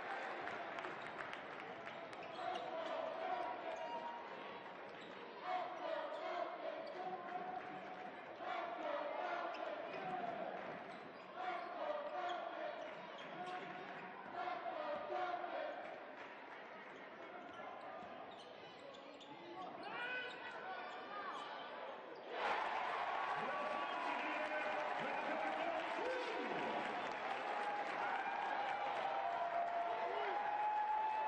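A basketball dribbling on a hardwood court during live play, with voices in the arena around it; the overall sound gets louder about 22 seconds in.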